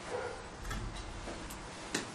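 Marker pen working on a whiteboard: a few light, sharp clicks as the tip taps and strokes the board, the last one the loudest, over faint room noise.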